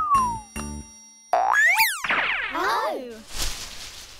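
Cartoon sound effects for a fall: a quick rising whistle, then a wobbling, falling boing, then a short rustling hiss. A bar of children's background music ends early on.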